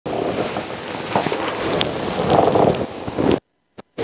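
Chiropractic adjustment of the neck and upper back: rubbing and rustling of clothing against a clip-on microphone, with a few short cracks from the patient's joints, 'very crunchy'. The sound cuts out abruptly about three and a half seconds in.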